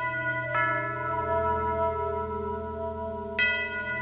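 Slow, solemn background music of struck bell tones, each note ringing on over a low sustained drone, with new strikes about half a second in and again near the end.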